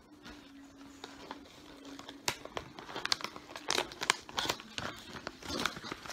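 Plastic treat bag crinkling in irregular sharp crackles as it is rummaged and handled, sparse at first and busier from about two seconds in.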